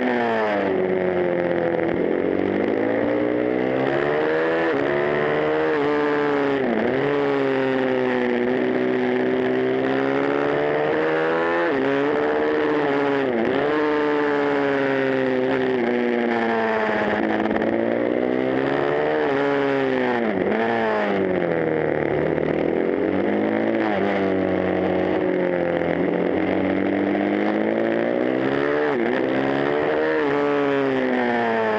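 Supermoto motorcycle engine heard onboard while lapping. It revs up on each straight, then drops sharply in pitch as the rider brakes and shifts down for each corner, over and over, with wind rush throughout.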